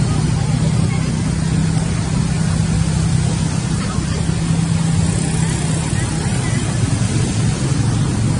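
A motor engine running steadily nearby, giving a loud, continuous low hum that eases slightly about six seconds in.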